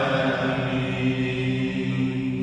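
Men's voices chanting an Islamic religious recitation together through microphones, holding long, steady notes.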